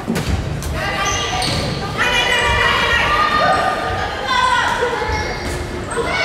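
A volleyball struck with a thud at the start, then high-pitched girls' shouting and calling through the rest, echoing in a large gym.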